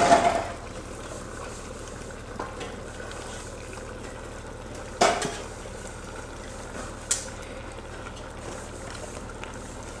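A wooden spoon knocks and scrapes against a plastic bowl and the rim of a steel pot as chopped leaves are scraped into a simmering pot of stock. The knocks come near the start, about five seconds in and once more faintly near seven seconds, over the steady hiss of the simmering pot.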